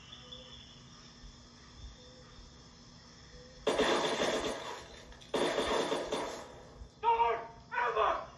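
Film soundtrack heard through a TV speaker: faint outdoor ambience, then two loud, sudden, harsh bursts about a second and a half apart, each dying away over about a second, and voices near the end.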